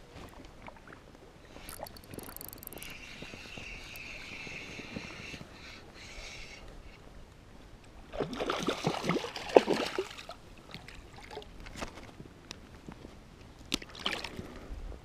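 Water sloshing and splashing around a float tube, with a steady whir from a spinning reel being wound in for a few seconds, starting about three seconds in. Past the middle comes a louder two-second burst of splashing, then a few light clicks.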